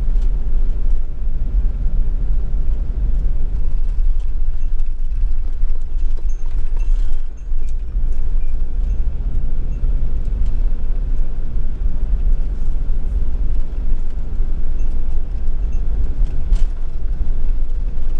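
Steady low rumble of a camper van's engine and tyres, heard from inside the cab while driving, with a couple of brief knocks.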